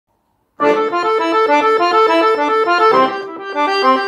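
Piano accordion playing a quick folk melody of short, rapidly changing notes over held chords, starting suddenly about half a second in.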